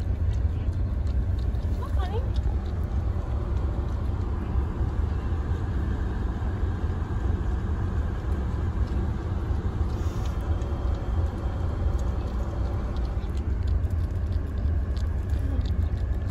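Steady low rumble of a car idling, heard from inside the cabin, with faint voices in the background.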